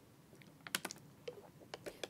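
Faint clicks and crinkles of a plastic water bottle being drunk from and set down on a podium, a few short ticks clustered in the second half.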